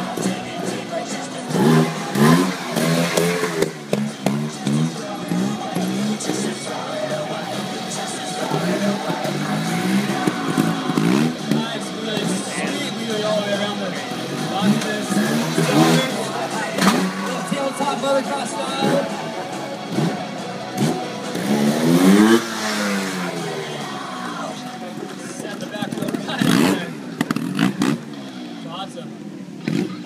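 Trials motorcycle engine revving in repeated short throttle blips, rising and falling in pitch, as the bike is hopped and ridden up onto an obstacle, with a few sharp knocks among them.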